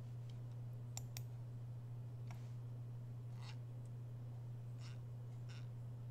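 A few faint clicks at a computer, two sharp ones close together about a second in and softer ticks later, over a steady low hum.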